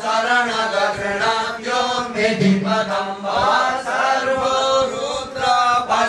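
A male voice chanting Sanskrit mantras in a continuous, steady recitation, the line flowing on with barely a pause for breath.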